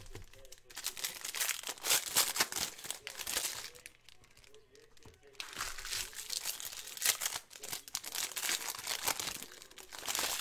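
Foil trading-card pack wrappers crinkling as packs are torn open and handled, in two spells: from about one to four seconds in, then again from about five and a half seconds to near the end.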